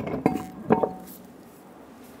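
A few light metallic clinks and knocks in the first second, two of them with a short ring, as the aluminum wheel is hung back onto the hub's wheel studs. The rest is quieter.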